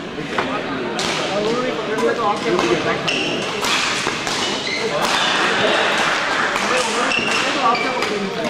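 Badminton hall: a steady murmur of crowd voices with frequent sharp knocks of rackets hitting shuttlecocks. A few brief high squeaks come from shoes on the court floor.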